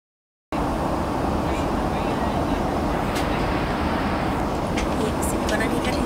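Jet airliner cabin in flight: a steady drone of engines and rushing air, starting abruptly after a half-second gap of silence.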